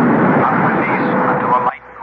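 Radio-drama sound effect of an airliner's engines at takeoff power during the takeoff run: a loud, steady noise with a hum running through it and voices faintly beneath. It cuts off suddenly near the end.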